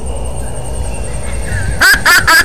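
A low steady rumble, then near the end a woman's loud cackling laugh breaks out, in rapid 'ha' bursts about four a second.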